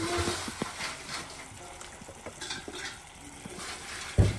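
Chicken wings and sliced onions sizzling in a pan with soy sauce, a steady hiss with a few light clicks.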